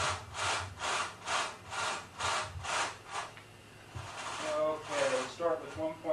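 Rhythmic rasping or scraping strokes, about two a second, that stop about three seconds in; a man's voice follows near the end.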